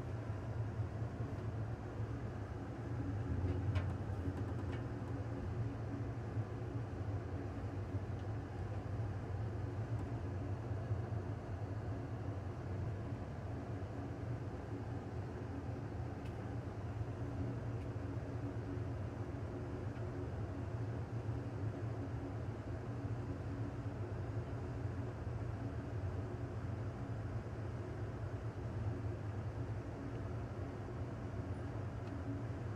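Steady low rumble of the Amtrak California Zephyr passenger train running along the track, heard from inside its rear car, with a slight swell and a few faint clicks about three to four seconds in.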